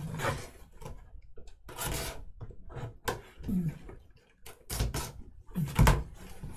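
A cardboard case being handled and opened by hand: irregular rubbing and scraping of cardboard, with a sharp knock near the end as the lid is lifted.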